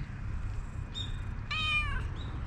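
A calico cat gives one short, high-pitched meow near the end, falling slightly in pitch.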